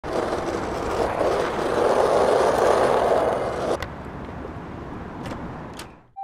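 Skateboard wheels rolling on rough pavement with a steady rumble that stops abruptly with a sharp clack a little under four seconds in. Two lighter clicks follow near the end.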